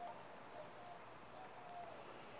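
Quiet background with a few faint, short bird calls.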